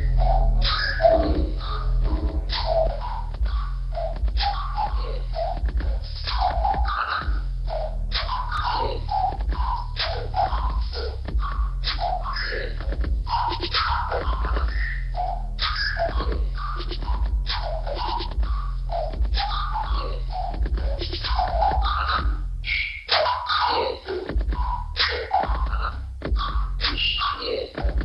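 Live electronic music: a steady deep bass line under a busy, choppy beat of evenly repeating hits. The deep bass drops out for stretches near the end.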